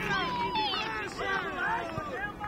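Several high-pitched voices of children and onlookers shouting and calling over one another during a youth football match.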